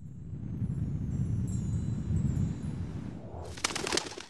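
Sound effect for an animated logo: a low rumble swells in and holds, with faint high tones above it. Near the end comes a quick flurry of sharp crackling clicks.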